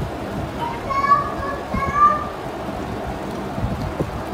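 A high-pitched voice calling out twice briefly, about one and two seconds in, over a steady hiss with soft low thumps.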